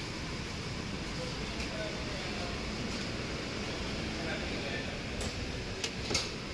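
Steady low background hum of machinery, with faint voices far off.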